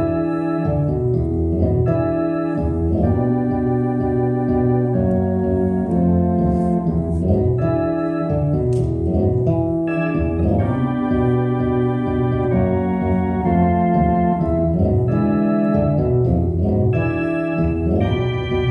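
Blues played on an electronic keyboard with an organ sound: held chords that change every half second or so over a moving bass line.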